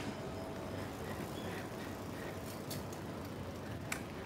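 Steady street ambience with a low hum of traffic. One sharp click comes shortly before the end.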